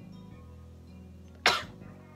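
A woman's single short cough about one and a half seconds in, over faint background music.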